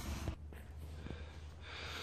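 Quiet background: a steady low hum under faint hiss, with no distinct event; the sound changes abruptly about a third of a second in, as at a cut.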